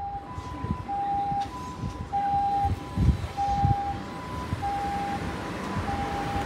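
Emergency-vehicle siren sounding a two-tone hi-lo call, a higher and a lower note taking turns about every 0.6 s, typical of a Japanese ambulance. Under it runs a low street-traffic rumble.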